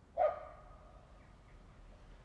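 A dog barks once, about a quarter second in, the sound trailing off briefly after it.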